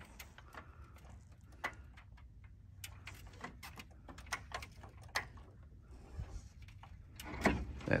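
Faint, scattered clicks and taps of a Jazzy power wheelchair being eased off a pickup tailgate onto an aluminium loading ramp: its wheels and casters knocking on the ramp as it is tilted and guided down.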